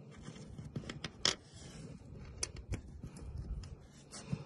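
Close handling noise: fingers working over bullet fragments on a plastic truck bed liner, a scatter of small sharp clicks and scratches, the sharpest a little over a second in.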